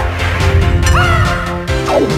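Upbeat TV theme music with a steady beat. About a second in, a brief high tone sweeps up and holds for about half a second over the music.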